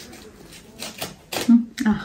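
Paper and plastic packaging rustling and crinkling as a small parcel is opened by hand, with light clicks and crackles; voices come in about a second and a half in.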